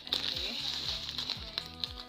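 Background music with a steady deep beat, over the crinkling rustle of a plastic shopping bag and a plastic cereal packet being pulled out of it.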